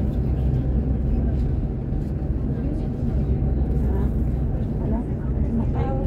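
Steady low rumble of a vehicle's engine and tyres heard from inside the cabin while cruising at highway speed, with faint talk in the background.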